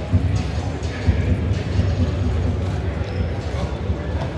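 Indistinct chatter of a crowd of many people, a steady hubbub with no single voice standing out.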